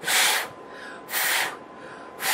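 Three short puffs of breath blown through pursed lips at a small jar of loose eyeshadow pigment, each about half a second long and about a second apart.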